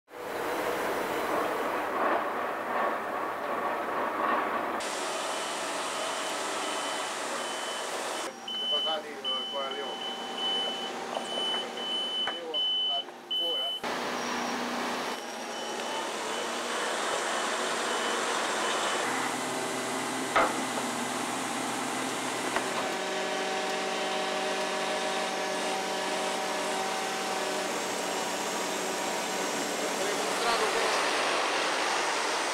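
Heavy vehicle and mobile crane engines running in a yard, with a high warning beeper sounding in short repeated pulses for several seconds partway through. The background changes abruptly several times, and a steady engine hum runs through the last seconds.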